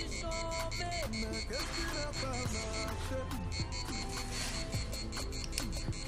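Background music with an Arduino piezo buzzer beeping in a rapid, even rhythm of several short high beeps a second: the light alarm triggered by light falling on the light-dependent resistor.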